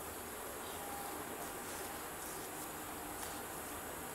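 A wooden spatula stirring milk in an aluminium pot, with a few light scrapes against the pot over a faint steady hiss.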